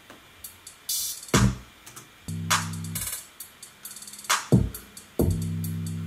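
Hip-hop beat playing back from a DAW: programmed drums with hi-hats and an open hi-hat, low kick hits, and two held 808 bass notes synthesized in Massive.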